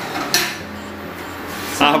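Metal spoon stirring reheating chickpeas in a pan, with a sharp clink of spoon against the pan about a third of a second in, then softer scraping.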